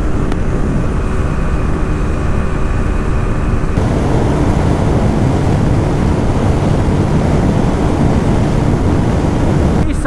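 Single-cylinder TVS Apache 160 motorcycle engine held at high revs at about 120 km/h, under heavy wind roar on the onboard microphone. About four seconds in, the sound changes abruptly to a rougher, wind-dominated roar as the recording switches to the other bike.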